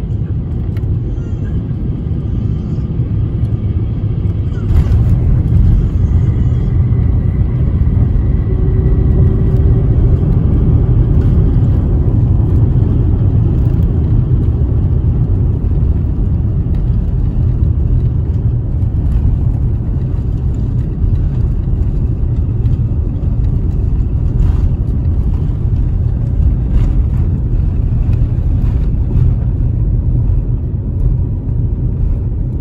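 Steady low rumble inside a jet airliner's cabin during landing. A short thump about five seconds in marks the wheels touching down, and the rumble then grows louder as the plane rolls along the runway and slows.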